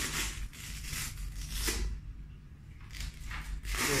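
Hook-and-loop (Velcro) patch being pressed onto and ripped off a plate carrier's loop panel: several short rasping tears, the longest near the end, as the grip of the hook side is tested.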